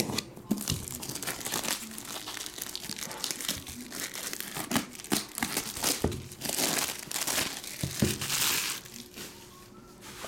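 Plastic shrink wrap being slit with a blade and peeled off a trading card box, crinkling and tearing continuously. The crinkling is loudest from about six and a half to eight and a half seconds in.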